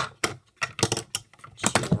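Pens and markers clicking and knocking against a wooden desktop as they are handled, picked up and set down: an uneven run of sharp taps, busiest near the end.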